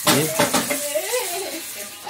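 Two sharp metallic clicks, one at the start and one about half a second later, as the air rifle and its spring-loaded metal bipod are handled.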